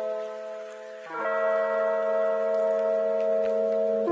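Background music: sustained, held chords. One chord fades and a new one comes in about a second in.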